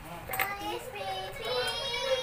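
A toddler's high-pitched voice in sing-song vocal sounds, ending in one long held note, with a short click about half a second in.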